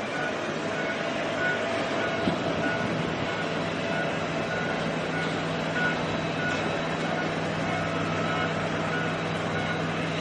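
Twin jet engines of an Airbus A330 airliner as it rolls along the runway: a steady roar with a constant high whine, joined by a faint short beep repeating every second or so.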